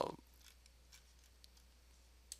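Quiet room tone with a steady low hum and a few faint computer mouse clicks, after the tail of a spoken 'uh' at the start.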